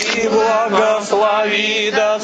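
Eastern Orthodox liturgical chant: voices singing long held notes that waver slightly and step from one pitch to the next.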